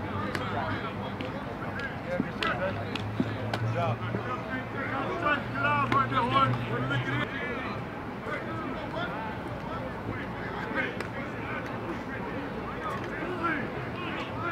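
Outdoor football practice ambience: scattered voices of players and coaches talking and calling out across the field, with a few sharp smacks. A steady low hum runs underneath and stops about seven seconds in.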